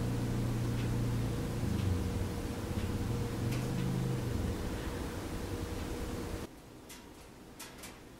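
Steady low drone of an engine running outdoors, which the sculptor guesses is a neighbour's snowblower. It cuts off abruptly about six and a half seconds in, leaving only a few faint clicks.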